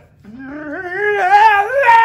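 A woman singing one long held note with no accompaniment. The note climbs steadily in pitch and wavers with vibrato.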